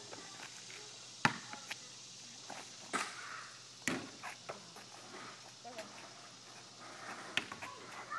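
A basketball giving a few faint, sharp knocks spaced a second or more apart as it is shot off the backboard and rim and bounces on the asphalt driveway.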